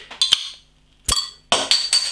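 A metal bottle opener clicking onto a beer bottle's crown cap, then the cap prised off with a sharp metallic snap about a second in, followed by a short hiss of gas escaping from the freshly opened bottle.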